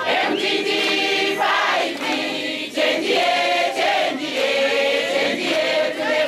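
A group of voices singing together in harmony, like a choir.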